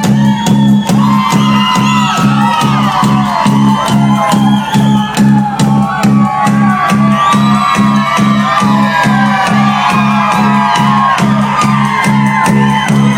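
Live new wave rock band playing loud, with a steady drum beat and a pulsing bass line under guitars or keyboards, and the crowd shouting and whooping.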